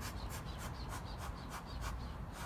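Bee smoker's bellows being pumped: a steady run of short hissing puffs of air, about three a second.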